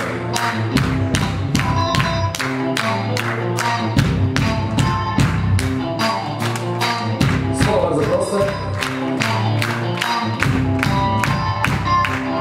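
Live band music led by an electric guitar over a bass line, an instrumental passage with no vocals. A steady beat ticks about four times a second throughout.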